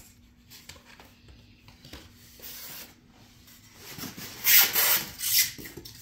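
Foam model-plane parts and the styrofoam packaging rubbing and rustling as a part is lifted out of the box, soft at first, then loud rustling for about a second and a half, starting about four seconds in.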